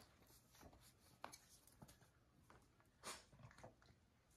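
Near silence with faint scattered clicks and scuffles from a mother dog and her six-week-old puppies moving and playing on a rug and tile floor, with one slightly louder brief rustle about three seconds in.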